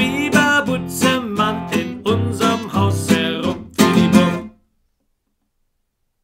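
Nylon-string classical guitar strummed in a steady rhythm of chords, cutting off suddenly about four and a half seconds in.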